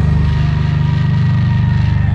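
Six-string Dingwall NG3 bass through a Darkglass Adam preamp, heavily distorted, picking one low note very rapidly and evenly in a steady death-metal run.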